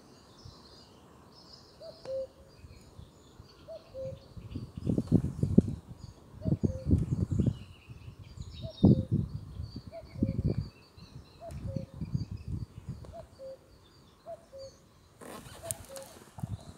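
A common cuckoo calling its falling two-note call over and over, about every one and a half to two seconds, with small songbirds chirping in the background. From about four seconds in, bursts of low rumbling are the loudest sound, from the camera's vehicle jolting along a dirt track.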